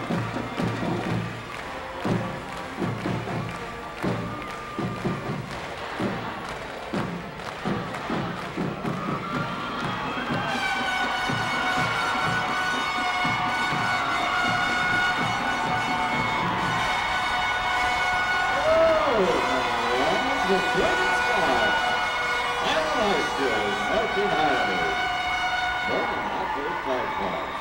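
Marching band music with crowd cheering: a drum cadence of repeated strikes, then, about ten seconds in, a sustained chord of held notes comes in and carries on, with shouts and cheers from the stands over it.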